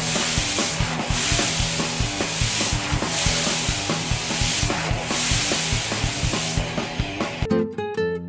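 Garden hose spraying water onto a car: a loud, steady hiss. Under it, music with a fast low pulse. Near the end the hiss stops and light guitar music takes over.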